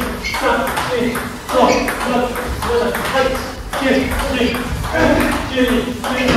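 Table tennis ball in a fast doubles rally: rackets strike it and it bounces on the table about twice a second.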